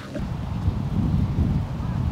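Wind buffeting the microphone: an uneven low rumble with no words.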